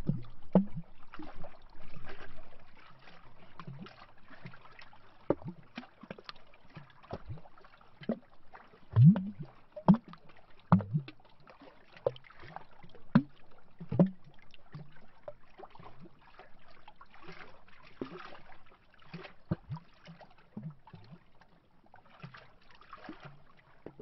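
Small lake waves lapping against a tree trunk at the water's edge, making irregular hollow glugs and slaps every second or so, a few louder ones about midway.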